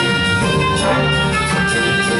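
Student jazz big band playing live: saxophones, trumpets and trombones sounding together in sustained chords at a steady level.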